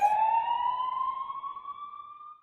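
Police siren wail: a single tone rising slowly in pitch and fading away.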